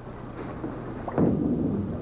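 A bowling ball is released onto a wooden lane about a second in: it lands with a sudden thud, then rumbles steadily as it rolls toward the pins.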